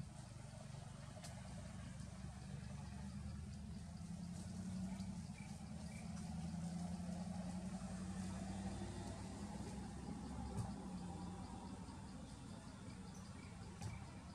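A low, steady engine hum, like a motor vehicle running some way off, swelling in the middle and easing again, with a faint regular ticking of insects above it. A sharp click stands out about ten and a half seconds in.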